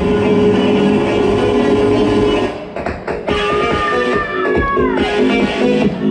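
Progressive trance music in a breakdown: sustained synth chords with the deep bass mostly gone, a brief drop in level about halfway through, then a synth line gliding downward just before the full track comes back in near the end.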